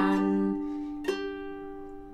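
Ukulele chord strummed and left to ring, struck again once about a second in, the notes slowly fading.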